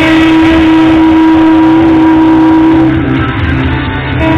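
Electric guitar played through an amplifier, holding one long sustained note for about three seconds, then dipping in level near the end.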